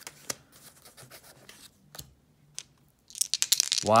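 Soft rubbing of stiff paper game cards with a few scattered clicks. About three seconds in, a quick rattle of dice shaken in the hand.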